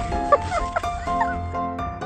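Background music with held notes, over which a dog gives a few short barks.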